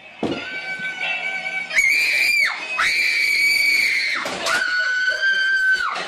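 High-pitched human screaming: a run of about four long, steady screams, each held for around a second, the last one lower in pitch.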